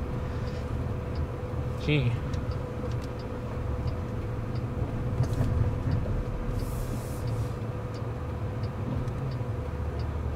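Low rumble of road and tyre noise inside the cabin of a Waymo self-driving Chrysler Pacifica minivan as it rolls along, with a faint steady hum throughout.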